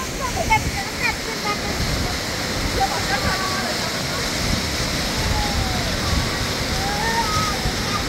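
Waterfall rushing steadily down a rocky canyon into a pool, with faint voices over it.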